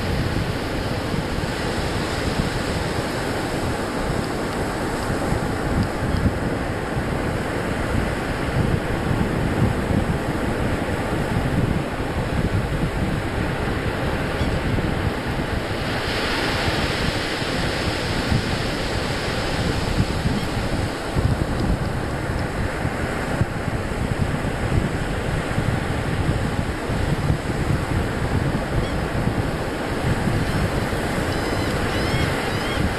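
Ocean surf breaking and washing up the beach, a continuous rushing hiss, with wind buffeting the microphone. The surf swells brighter for a couple of seconds about halfway through.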